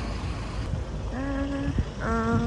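Road traffic rumbling steadily beside the pavement, with a short voiced hum for about half a second a little past the middle.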